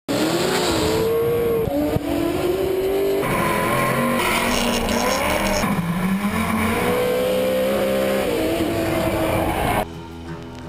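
Competition drift cars at full throttle, with the engine note rising and falling through each slide and tyres squealing. The engine pitch jumps abruptly several times as the sound switches between onboard cameras, then cuts off just before the end.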